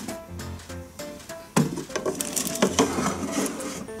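Light background music, with a toy baking tray scraping as it is slid into a wooden toy kitchen oven, starting sharply about one and a half seconds in and running for about two seconds.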